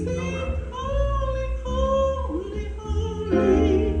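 Praise-team singers, a woman's voice among them, singing a worship song into microphones, holding long notes that slide in pitch.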